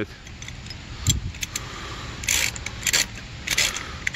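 Hand ratchet and 19 mm socket clicking and rattling in short, irregular bursts as a wheel lock is tightened onto a wheel stud.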